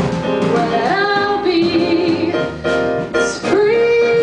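A woman singing a jazz ballad into a microphone over keyboard and upright bass accompaniment. Near the end she rises onto a long held note.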